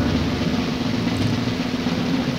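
A drum roll, held steady, building suspense before an answer is revealed.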